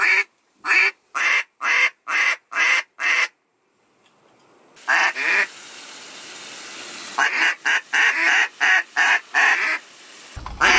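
Hand-blown duck call sounding a series of loud, evenly spaced quacks, about two a second. After a short pause comes one more quack, then a quicker run of quacks in the second half, with wind hiss in between.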